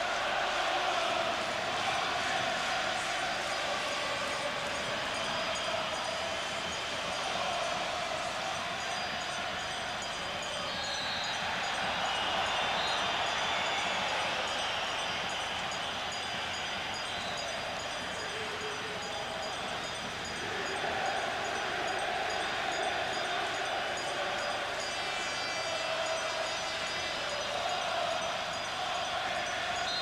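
Football stadium crowd heard through a TV match broadcast: a continuous din of the crowd with sustained chanting that swells and fades over several seconds at a time.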